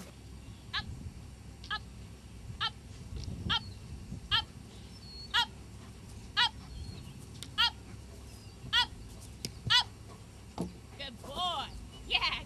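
A dog giving short high-pitched yelps, about one a second, then a quicker run of yelps near the end as it is let go and runs.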